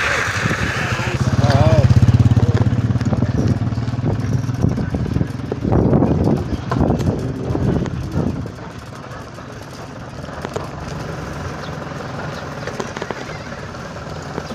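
A small motor vehicle's engine runs close by, loudest about two seconds in, then fades away. Voices talk a few seconds later over street background.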